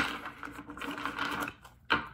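Deck of tarot cards being shuffled by hand: a rapid papery fluttering that stops about a second and a half in, then a single sharp click near the end.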